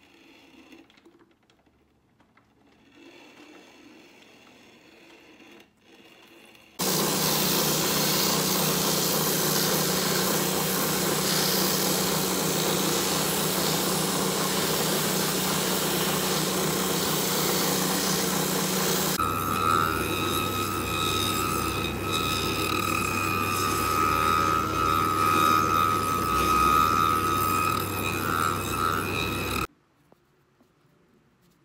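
Shoe finishing machine running, its sanding wheel grinding the edge of a boot sole; it starts abruptly about seven seconds in. About nineteen seconds in the sound changes to a steady high whine over a low hum, which cuts off suddenly near the end.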